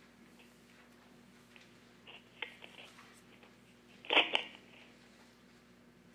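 Faint steady room hum with a few small clicks and rustles about two to three seconds in, then one short, louder knock and rustle about four seconds in.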